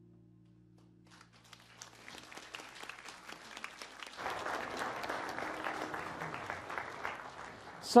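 The band's last held chord fades away over the first two seconds while applause starts, scattered at first and growing fuller about four seconds in.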